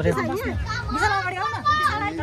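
Only speech: several people talking at once.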